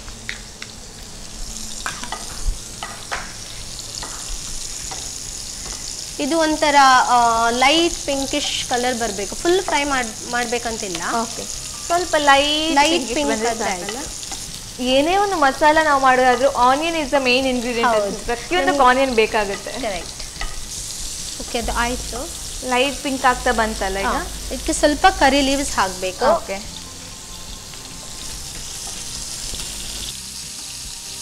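Sliced onions and curry leaves sizzling steadily in hot oil in a nonstick frying pan, with a spatula stirring and scraping them. Through the middle of the stretch a voice is heard over the sizzling.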